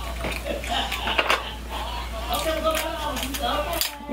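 Snow crab leg shells being snipped with kitchen scissors and cracked by hand: a run of short sharp clicks and crackles. A voice murmurs briefly in the middle.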